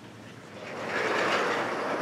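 Vertical sliding chalkboard panels rolling along their tracks as one board is raised and another brought down: a rumbling rub that starts about half a second in and grows quickly louder.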